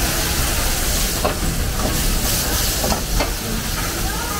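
Food frying in pans over high-flame gas wok burners: a steady sizzling hiss, with a few short knocks of metal on metal.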